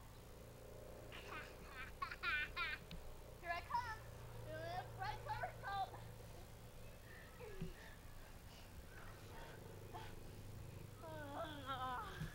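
A young child's high-pitched wordless squeals and babble, coming in short clusters a second or two long with pauses between, over a steady low hum.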